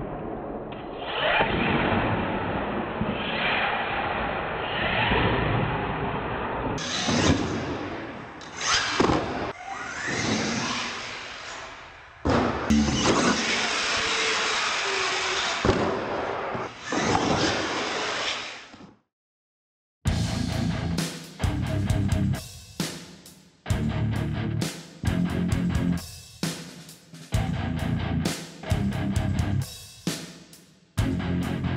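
R/C monster truck electric motors whirring and revving, with the trucks' tyres and landings on a concrete floor, for most of the first two thirds. This cuts off abruptly, and after a second's silence rock music with a heavy, regular beat takes over.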